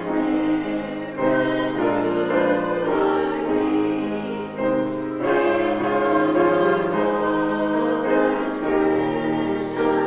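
Small choir of mostly women's voices singing in parts, accompanied by a grand piano, with held notes that change every second or so.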